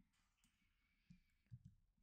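Near silence, with a few faint clicks about a second in and again near the end, from working a computer's mouse and keyboard.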